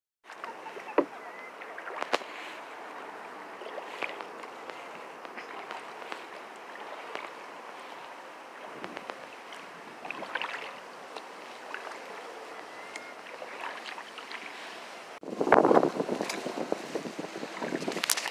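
Kayak on open marsh water: a steady soft wash with scattered small knocks and splashes. About fifteen seconds in, a much louder rustling and scraping starts as the kayak is forced into dense reeds that brush against the hull.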